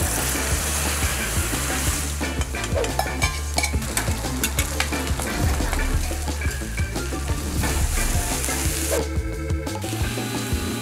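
Seafood and egg batter frying in hot oil on a pan, sizzling loudly, with a metal spatula scraping and clattering against the pan as the crispy pieces are turned. The sizzle falls away about nine seconds in.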